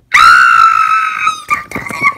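A loud, high-pitched squeal of excitement from a young female voice, held for about a second and a half with the pitch sinking slightly, then trailing into shorter squeaky sounds.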